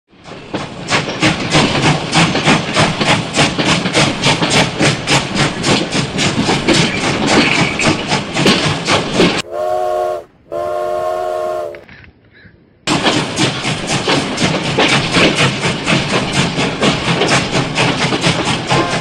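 Steam locomotive chuffing in a steady rhythm, about four beats a second. About halfway through, a multi-tone steam whistle sounds twice, a short blast then a longer one, and after a brief lull the chuffing starts again.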